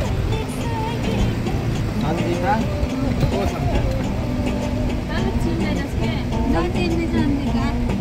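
Steady low rumble of a moving vehicle, with people's voices and music over it.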